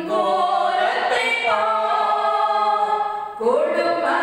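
A woman singing a hymn unaccompanied into a handheld microphone, holding long notes, with a short breath about three seconds in and a rising slide into the next note.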